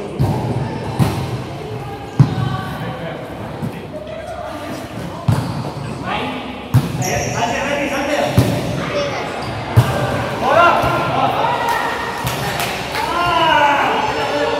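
A volleyball being played in a rally: a series of sharp hits and thuds on the ball, about seven in all, the loudest a little after two seconds in, echoing in a large hall. Players' voices call out about ten seconds in and again near the end.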